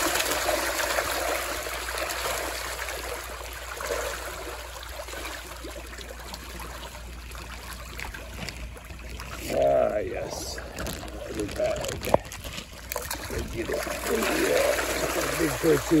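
A crowd of fish splashing and churning the surface as they feed on scraps thrown into the water. The splashing is loudest at the start, eases off into lapping and trickling water, and picks up again near the end.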